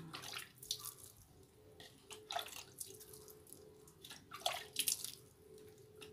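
Water splashing and dripping as it is sprinkled by hand from a small container onto the soil of a potted plant, in irregular splashes, the loudest a little before five seconds in.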